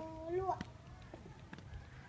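A child's drawn-out, high-pitched call for about half a second, rising at the end, then quiet with a few faint clicks.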